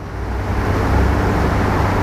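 A loud, steady rushing noise with a low rumble underneath, swelling up in the first half second and then holding even.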